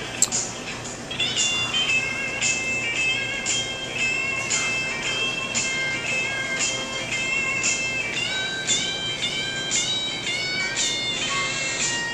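Music playing with a steady beat of about two beats a second and a melody of short stepped notes, with a single sharp click just after the start.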